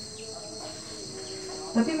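Steady, high-pitched chorus of crickets, an unbroken trill.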